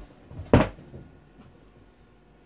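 A single sharp thump about half a second in, with a smaller click at the start.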